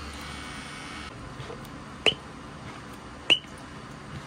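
A tattoo machine runs with a steady hum and stops about a second in. Then come two sharp squirts from a foam soap bottle onto the freshly coloured skin, about a second apart.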